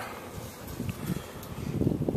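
Wind buffeting a small handheld camera's microphone outdoors, an uneven low rumble over faint hiss.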